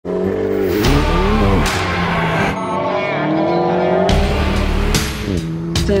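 Alpine A110 sports car engine revving, its pitch rising and falling several times, over background music.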